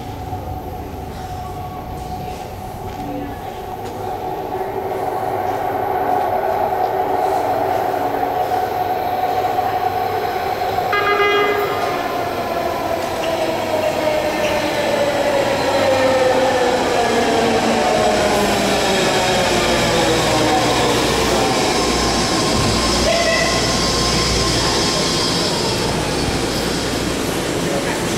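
A five-car BART train pulling into an underground station and braking to a stop: rumbling and wheel noise grow louder, and a steady whine slowly falls in pitch as the train slows. A short horn note sounds about eleven seconds in.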